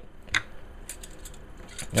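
Handling noise from a boxed CPU heatsink fan being turned over in the hands: one sharp click about a third of a second in, then a few faint light ticks.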